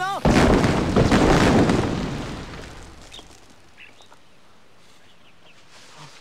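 A homemade landmine exploding: a sudden loud blast about a quarter second in, a second surge about a second in, then rumbling away over the next two seconds.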